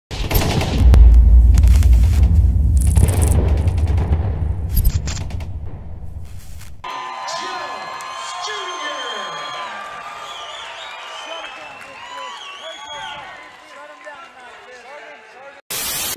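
A deep booming rumble with sweeping hiss, a cinematic logo sound effect, cuts off abruptly about seven seconds in. It gives way to many voices shouting over each other, a crowd at an MMA cage fight. It ends with a brief burst of TV-static hiss.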